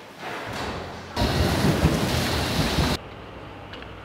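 A loud rushing noise starting about a second in and cutting off abruptly after about two seconds, with quieter background noise on either side.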